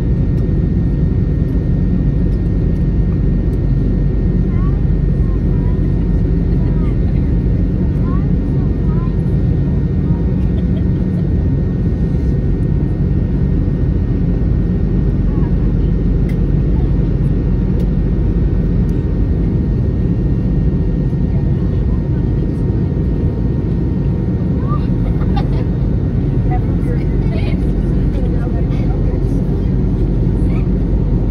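Steady low roar of an airliner cabin in flight: engine and airflow noise through the fuselage, unchanging in level.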